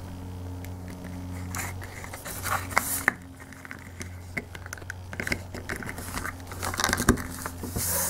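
Plastic action figure being worked onto its plastic display base by hand: scattered small clicks, scrapes and rubbing, busiest about two and a half seconds in and again near the end. A steady low hum runs underneath.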